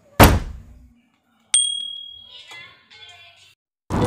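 Sound effects for a subscribe-button animation: a sharp thump, then about a second later a click and a high bell ding that rings and fades away.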